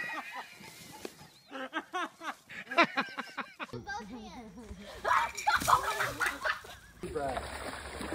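Several people's excited voices calling out and laughing, changing abruptly twice. Near the end, water splashing under the voices.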